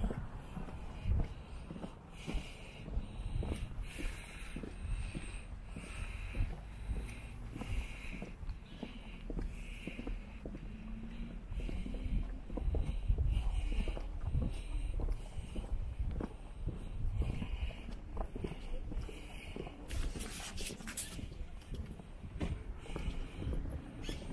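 Footsteps on a concrete sidewalk at a steady walking pace, about one step a second, over a low rumble of wind and handling on a moving microphone.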